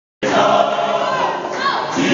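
Gospel choir singing, many voices together with gliding pitches. The sound cuts in abruptly just after the start.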